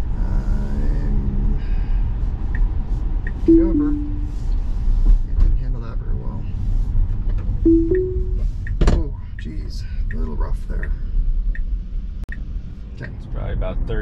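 Low tyre and road rumble inside the cabin of a Tesla driving on a wet road. Two short two-note chimes sound over it: a falling pair about three and a half seconds in and a rising pair near eight seconds, Tesla's signals for Autopilot disengaging and then re-engaging. A single sharp knock comes about nine seconds in.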